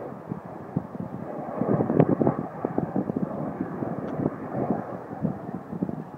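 Avro Vulcan's four turbojet engines heard at a distance: a rough, crackling jet rumble that swells about two seconds in, then eases.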